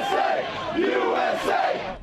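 A rally crowd shouting together, the voices swelling twice about a second apart.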